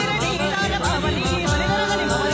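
Hindi ghazal-style song: a male voice sings a wavering, ornamented run without words, over harmonium and a steady hand-drum beat.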